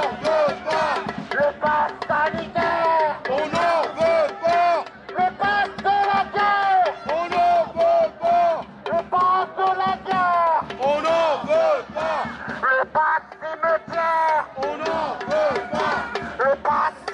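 A man's voice shouting slogans through a megaphone in short, repeated, sing-song phrases, with crowd voices around it.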